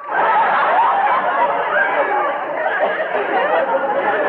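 Live studio audience of a 1950s radio comedy laughing in one long, steady wave at a punchline, heard through a narrow-band old broadcast recording.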